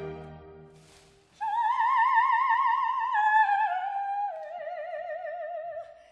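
Operatic soprano singing an unaccompanied recitative phrase with wide vibrato, her line stepping downward over about four seconds. It enters about a second and a half in, once an orchestral chord has died away.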